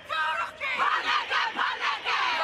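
Black Ferns women's rugby team chanting a haka in unison: a group of women's voices shouting short rhythmic phrases, with brief breaths between them.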